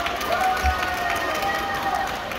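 Badminton shoes squeaking and stamping on a court mat during a doubles rally, with sharp racket hits on the shuttlecock and a heavy footfall thump about a second in. Voices from the busy, echoing hall sit underneath.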